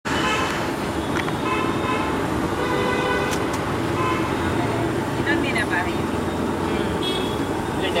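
Busy road traffic with vehicle horns sounding again and again over the first few seconds, over a steady background of engines and voices.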